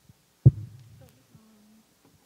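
A single loud, low thump of a handheld microphone being handled as it is passed from one speaker to the next, dying away over about half a second, followed by faint handling noise.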